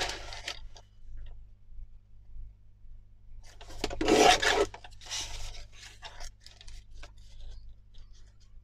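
Paper trimmer's cutting head slid along its rail, slicing through paper with a napkin layer glued on: a rasping scrape of about a second, starting midway, followed by lighter rubbing and paper rustles as the paper is handled.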